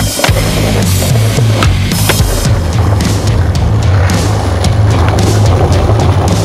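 Skateboard on concrete: a few sharp clacks of the board on a ledge in the first couple of seconds, then the wheels rolling over paving, all under loud music with a steady bass.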